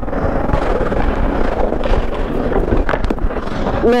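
Steady rushing noise picked up by a hockey goalie's body-worn Bluetooth microphone on the ice, with a few faint clicks about three seconds in.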